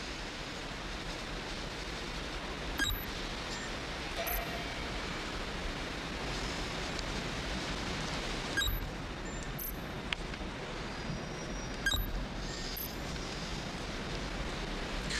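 Steady hiss of background noise, broken by three short sharp clicks about three, nine and twelve seconds in.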